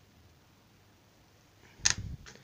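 Quiet room tone, then near the end a single sharp click with a dull thump just after it: handling noise as the camera is moved by hand.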